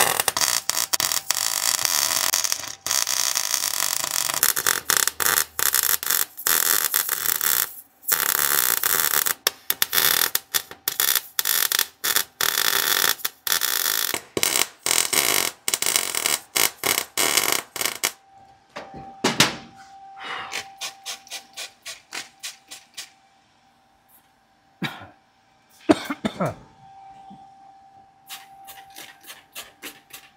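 MIG welder tack-welding a shortened steering column in place: the arc crackles loudly in a run of bursts with short breaks for the first half or so. After that come quieter scattered clicks and taps, with a few quick squirts of a spray bottle near the end.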